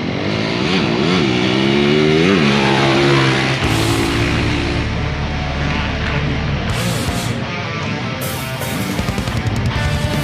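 Motocross dirt bike engines revving hard on the track, the pitch climbing and dropping several times in the first three seconds or so. Rock music runs under them and takes over for the rest.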